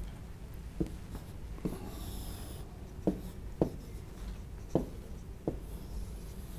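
Stylus writing on an interactive touchscreen whiteboard: about six light taps as the pen touches the screen, with a brief scratchy stroke about two seconds in.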